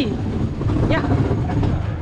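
Steady low rumble of a theme-park track-ride car running along its guide rail.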